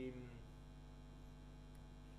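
Steady low electrical mains hum in the recording, heard on its own once a drawn-out spoken syllable fades out near the start.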